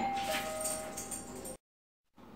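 A sudden bell-like ringing of several steady tones at once, slowly fading. It cuts off to dead silence about one and a half seconds in.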